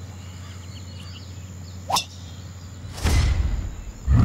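Sound-designed golf drive: a single sharp crack of the club striking the ball about halfway through, then about a second later a loud rushing whoosh with a deep rumble underneath as the ball flies, fading away, over a low steady hum.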